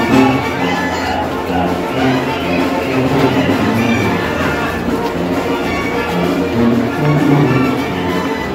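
Oaxacan village brass band (banda de viento) playing a chilena live, with held melody notes over a steady repeating bass line.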